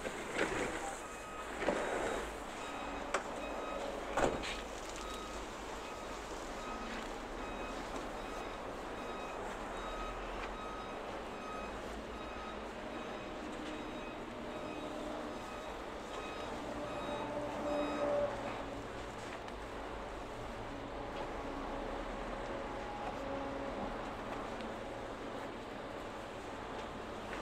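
A few knocks and scrapes in the first five seconds from a long-handled wash brush and bucket being handled. After that there is steady outdoor background noise with faint, short repeated tones.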